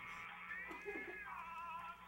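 A woman's muffled cries through a duct-tape gag, wavering up and down in pitch, over background music.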